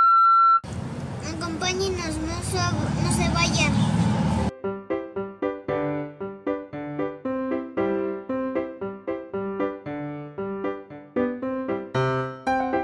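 A loud, steady electronic beep about a second long, then a few seconds of garbled voice-like sound, then solo piano music in light ragtime, silent-film style that starts about four and a half seconds in.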